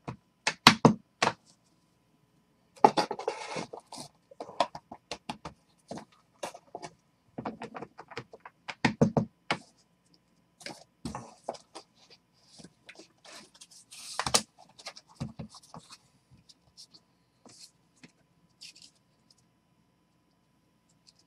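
Trading cards and card packs handled on a tabletop: irregular taps, clicks and knocks, with a few short rustles of wrappers and card stacks.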